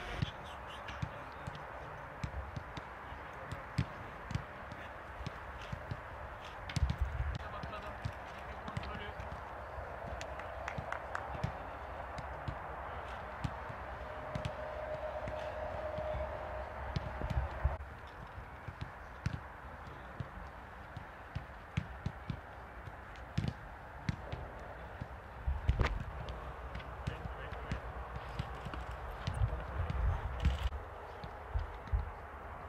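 Footballs being kicked on a grass pitch, short thuds at irregular intervals, under indistinct shouts and chatter of players and coaches.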